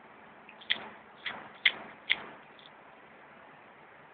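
Four sharp bangs in quick succession, roughly half a second apart, each with a short ringing tail. A couple of fainter clicks come just before and just after them, over steady hiss.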